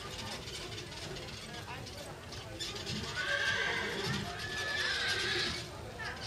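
A horse whinnying: one long call that starts about three seconds in and lasts a little over two seconds.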